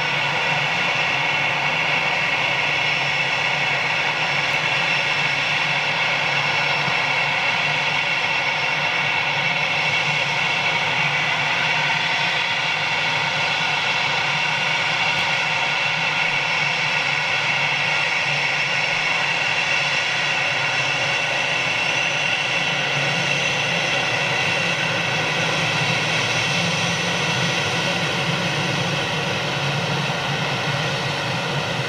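Jet engines of an easyJet Airbus A320-family airliner running at idle as it waits to line up: a steady whine made of several high tones over a low hum.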